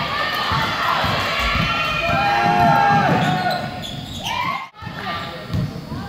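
Basketball game sounds in a gym: the ball bouncing on the hardwood floor, shoes squeaking and voices from players and spectators. There is a brief dropout about three-quarters of the way through.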